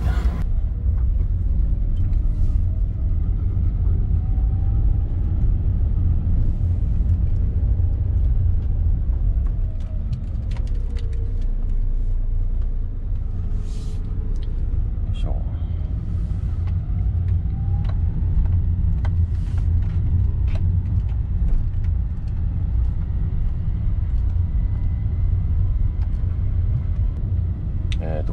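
A Honda N-VAN's 660 cc three-cylinder engine and road noise, heard from inside the cabin as the van pulls away and drives on a six-speed manual: a steady low rumble with the engine note rising and falling a few times through the gears. Scattered light clicks and knocks are heard over it.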